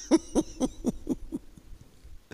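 A man laughing into a handheld microphone: a quick run of short pitched laughs, about four a second, dying away about a second and a half in.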